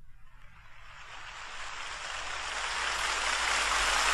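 A steady rushing noise, with no clear pitch or rhythm, fading in and swelling gradually louder.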